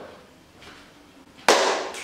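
A single sharp, loud crack of noise about one and a half seconds in, fading over about half a second, after a stretch of quiet room tone.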